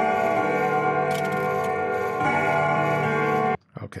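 Recorded carillon bells and clock chimes playing back at once from two layered tracks, too many bells ringing together, with a fresh strike about two seconds in. The summed tracks make a louder overall volume. The sound cuts off abruptly about three and a half seconds in when playback is stopped.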